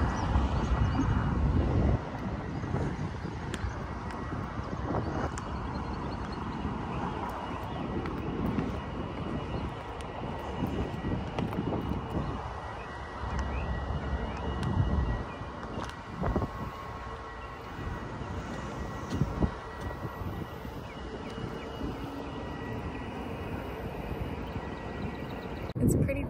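Outdoor ambience: wind buffeting a phone microphone over a low, uneven rumble, with a few short knocks of handling midway through.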